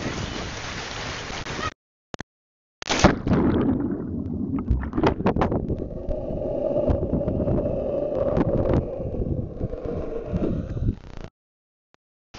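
Water rushing down a tube water slide, then after a brief dropout a splash into the pool and several seconds of muffled, bubbling underwater sound with scattered clicks, heard through a submerged camera; it cuts off about a second before the end.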